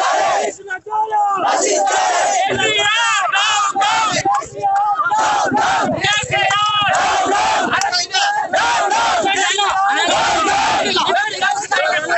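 Crowd of men at a protest shouting together, many loud voices overlapping with no pause.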